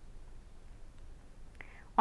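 A pause between spoken sentences: faint, steady room hiss, with a faint short sound about a second and a half in, just before speech resumes.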